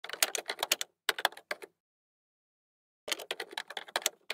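Typing sound effect: quick runs of keystroke clicks, two short runs in the first second and a half, a pause, then another run starting about three seconds in.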